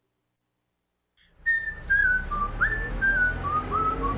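Dead silence for about a second, then a whistled tune begins abruptly: a single line of short notes stepping mostly downward with small upward slides, over a low steady backing.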